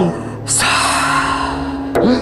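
A woman's long breathy gasp: a sudden rush of breath about half a second in that fades over a second and a half. A low steady music drone runs underneath.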